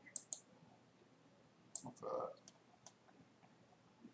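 Computer mouse clicking in short, sharp single clicks: two close together near the start and a few more between about two and three seconds in. A brief low sound comes around two seconds in.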